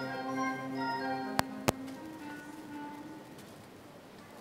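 Concert band holding a soft sustained chord that thins into a quieter passage of a few held notes. Two sharp clicks come about a second and a half in.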